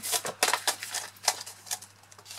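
Stiff clear plastic die-storage pouch being flexed and handled: a flurry of plastic crackles and rustles in the first half second, then scattered sharper crackles.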